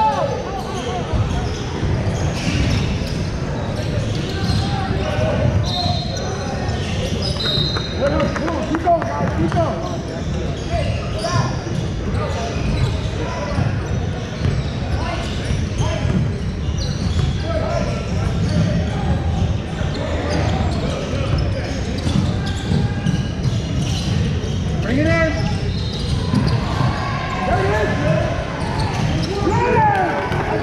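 Indoor basketball game sounds in a large echoing gym: a basketball bouncing on the hardwood court and players' feet on the floor, under scattered shouts and voices from players and spectators.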